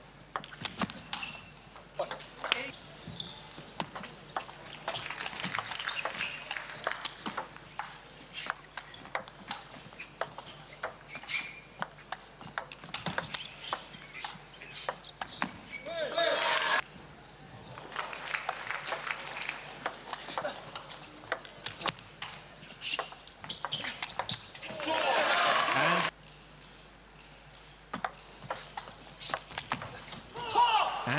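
Table tennis ball clicking back and forth between bats and table during fast rallies. Twice, about halfway through and again near the end, a loud burst of crowd noise and shouting follows a point and cuts off abruptly.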